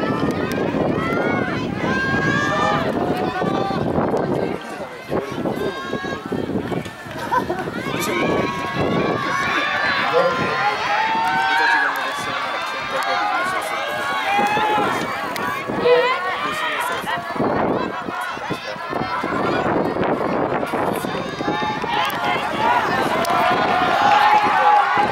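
Several voices calling out and shouting encouragement to the runners from the trackside, overlapping one another with no clear words.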